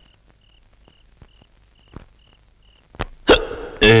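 Crickets chirping faintly in a steady rhythm, about two chirps a second; near the end a man gasps in two sharp sobs and breaks into a loud wailing cry of "ayyo".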